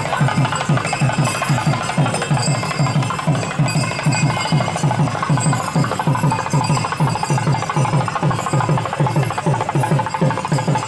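Music of fast, steady drumming, about four or five beats a second, with a light high clatter over it.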